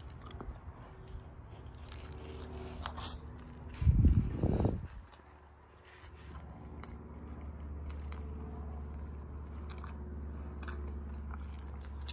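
A person biting into and chewing a soft beef taco in a flour tortilla, with lettuce and tomato, with faint small clicks of chewing and handling. A loud, low, short burst comes about four seconds in.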